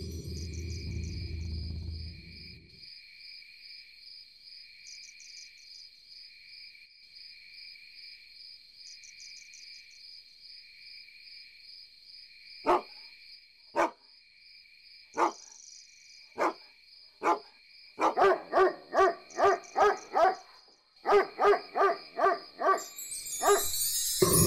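A dog barking: single barks about a second apart, then two quick runs of barking, over steady chirping crickets.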